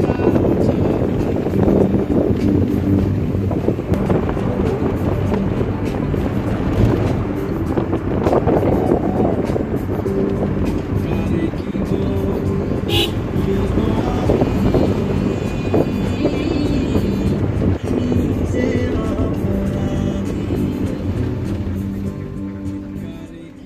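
Steady road and engine noise of a moving car, heard from inside the cabin, with music playing over it throughout.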